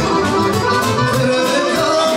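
Live folk band music: two accordions playing a melody over a steady drum-kit beat.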